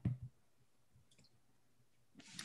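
Two quick computer mouse clicks, about a fifth of a second apart, right at the start.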